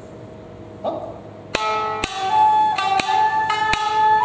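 Shamisen and shakuhachi start playing about one and a half seconds in: sharp plucked shamisen strikes under a held shakuhachi melody that steps slowly upward.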